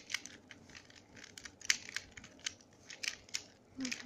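Plastic pieces of a Square-1 Star twisty puzzle clicking and clacking as its layers are turned and flipped by hand during an algorithm. The sharp clicks come irregularly, several a second.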